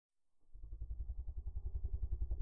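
A low, fast-pulsing rumble, about ten pulses a second, fading in from silence over the first half second.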